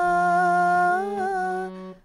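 Nagi harmonium playing a held melody note over a steady low drone, with a voice singing the shabad along on a long sustained vowel. The note bends slightly about a second in, and the sound fades out near the end.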